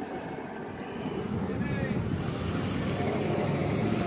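Road vehicle going by on the street, a low engine and tyre rumble that grows steadily louder from about a second in.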